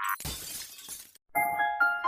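A crash like a glass-shattering sound effect, with a low thud at its onset, fading out within about a second. About a second and a half in, an intro tune of bright keyboard notes starts.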